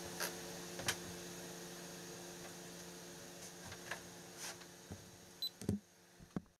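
Faint ringing of the acoustic guitar's last chord slowly dying away, with a few small handling clicks. A brief high beep comes near the end, then a couple of soft knocks.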